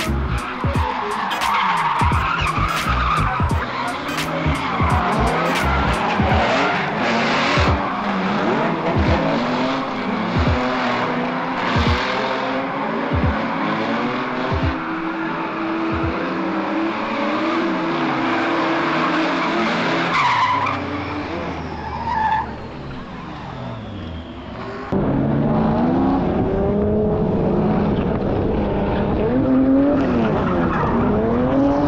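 C5 Corvette's V8 engine revving up and down hard while drifting, with tyres skidding and squealing. The sound changes abruptly about five seconds before the end.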